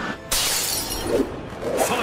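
Glass shattering: a sudden crash about a third of a second in, followed by tinkling fragments.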